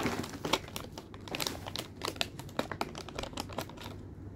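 Crinkly foil mystery-bag packaging being handled and squeezed in the hands, giving quick, irregular crackles.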